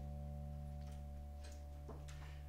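Electric guitar holding a sustained, slowly fading low drone, with a few faint clicks as the strings are touched.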